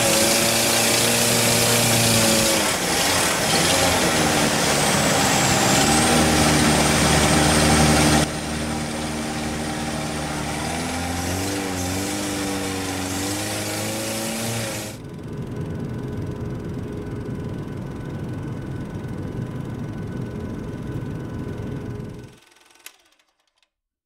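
Boat engine running with its pitch rising and falling, over steady water and wind noise. The level drops abruptly about eight seconds in and again about fifteen seconds in, then fades out near the end.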